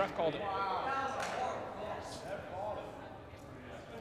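Men's voices calling out and talking on the field, not close to the microphone. There is a loud call right at the start, then more talk through the first second and a half, in a large indoor sports hall.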